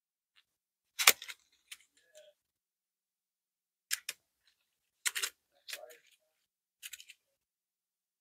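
Paper bow loops crinkling and crackling between the fingers as the layers are pulled apart: a handful of short, scattered crackles with quiet gaps between them.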